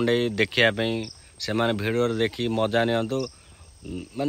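A man talking in short phrases with brief pauses, over a faint steady high-pitched tone.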